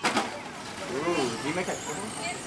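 Electric RC short-course truck running over a dirt track, its motor whining faintly over tyre and track noise, with a sharp knock right at the start. Faint voices in the background.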